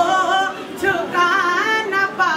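Unaccompanied singing of an Urdu devotional manqabat for Imam Hussain: a drawn-out melismatic vocal line whose pitch wavers and bends up and down, with no clear words.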